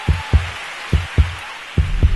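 Intro sound effect: heartbeat-like double thumps, two pairs, over a loud hiss, with a deep rumbling boom coming in near the end.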